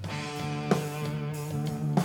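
Electric guitar played live through a PA, holding sustained notes that change with a sharp attack under a second in and again near the end.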